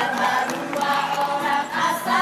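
A group of men and women singing a song together, choir-style.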